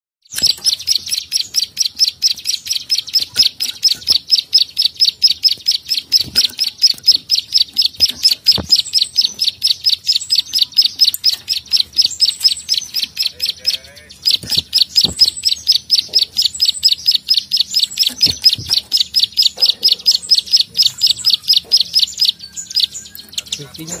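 Plain prinia giving its rapid 'klik-klik' call, a fast, even run of sharp clicks kept up for many seconds with one short pause about halfway. A few soft thumps sound under the calls.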